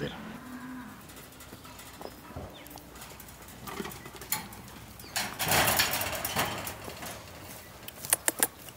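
Cattle mooing faintly, a low drawn-out call in the first couple of seconds. A brief burst of noise follows around five to six seconds in.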